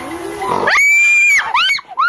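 A piercing, high-pitched scream held for about half a second, then short shrill squeals rising and falling near the end.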